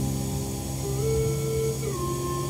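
Instrumental backing track of a slow soul ballad between sung lines: held chords that change about a second in and slide down near the end.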